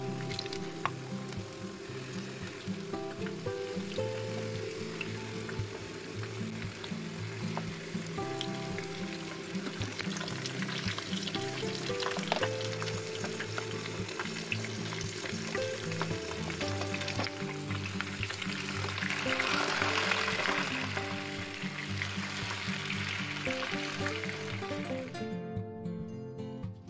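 Potato slices sizzling as they fry in hot oil in a nonstick frying pan, a steady hiss under background music. The sizzle swells for a couple of seconds past the middle and stops shortly before the end.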